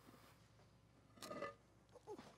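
Near silence: room tone, with one faint, brief sound a little over a second in.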